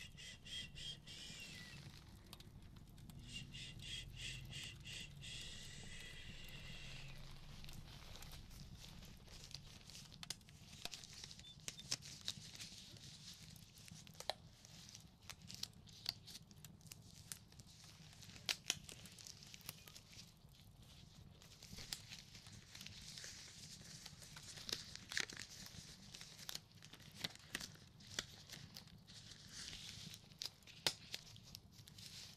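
Disposable gloves being pulled on over the hands, the thin rubber stretching, rustling and snapping in scattered sharp clicks. Near the start, a rapid high-pitched trill sounds twice.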